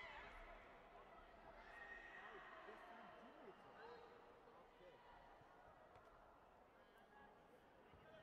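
Faint sports-hall ambience: distant, indistinct voices and occasional high shouts from the arena, with a short sharp shout right at the start.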